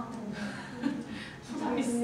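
Students talking among themselves in pairs in a classroom, a background of conversation with no single clear speaker, growing louder about one and a half seconds in.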